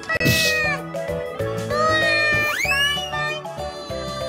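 Bright background music for a children's show, with two short high-pitched gliding cries over it: a brief breathy one near the start and a rising-then-falling one past the middle.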